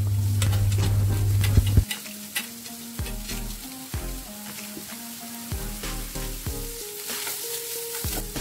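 Chopped onions sizzling in hot oil as they are tipped into a non-stick frying pan with frying garlic and stirred with a spatula, with scattered clicks of the spatula against the pan. A loud low hum runs for the first two seconds and cuts off suddenly.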